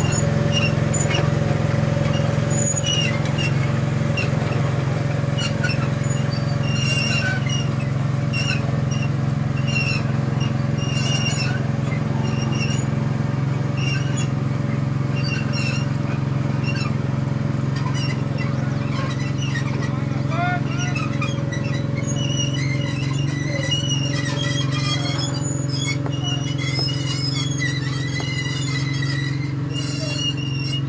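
Open-air ambience at a cricket ground: a steady low hum throughout, with faint distant voices and short high chirps recurring every second or two.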